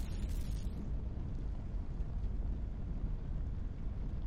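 Steady, low rumbling sound effect of flames burning beneath an animated logo reveal, the tail of a boom.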